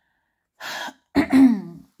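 A woman clearing her throat: one rough, voiced hack lasting under a second, about a second in. Before it comes a short hiss.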